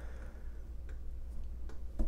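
A few faint, light clicks of dice being picked up and set down on a cardboard card during a tabletop game, over a low steady hum.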